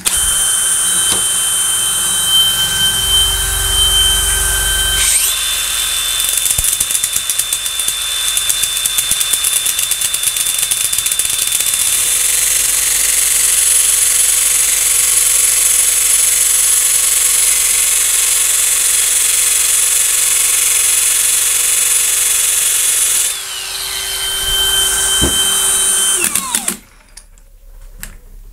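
A cordless drill clamped in a vise spins a metal washer blank while a cordless angle grinder with a coarse-grit fibre disc grinds its edge round. The drill whines alone for about five seconds, then the grinder starts and grinds steadily. About 23 seconds in the grinder winds down with a falling whine, and the drill runs on a few seconds more before stopping near the end.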